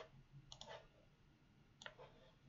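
Three faint, sharp computer mouse clicks: one at the start, one about half a second in, and one near the end, over a low hum.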